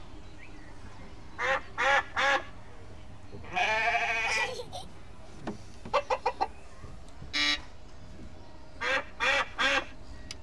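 Farm animal calls, likely played by the ride beside the sheep and goat figures: a few short calls, one longer wavering call about midway, then more short calls near the end, over a steady low hum.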